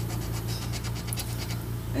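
A coin scraping the silver coating off a scratch-off lottery ticket in a run of quick, short strokes, over a steady low hum.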